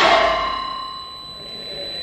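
Live electronic music from a modular synthesizer: several held tones that fade away over about a second, leaving a thin high tone.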